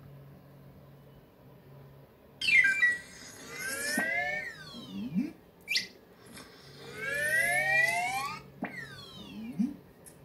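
Cartoon sound effects of drink being sucked up a long bendy straw, played through a television: rising, whistle-like sweeps in pitch that come in waves, mixed with short low rising chirps and a few sharp clicks. They start about two seconds in, after a faint low hum.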